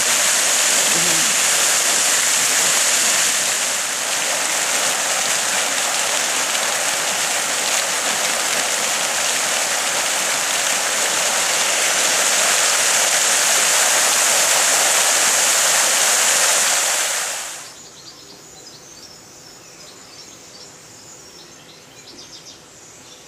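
Water jets of a multi-jet park fountain splashing steadily into the basin. About three-quarters of the way through the sound cuts off suddenly, leaving a much quieter background with faint high chirps.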